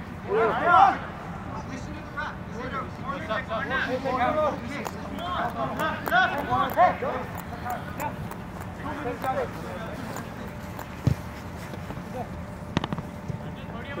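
Men's voices calling and talking across an outdoor football pitch, with two short knocks near the end.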